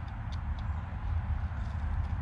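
Scissors cutting through stiff paper: a run of faint, crisp snips over a steady low rumble.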